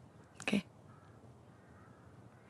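A single short vocal sound from a person, about half a second in, against quiet room tone.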